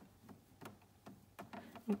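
Faint handling sounds from a cloth wiping the steam wand of a coffee machine: soft rubbing with a few small scattered clicks.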